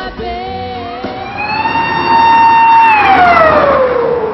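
A siren wailing: its pitch climbs over about a second, holds, then falls away near the end. The tail of background music can be heard at the start.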